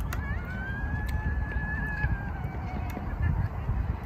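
A single long, high-pitched, nasal vocal squeal from a woman, lasting about two seconds and sagging slightly in pitch at the end, over a low rumble of wind on the microphone.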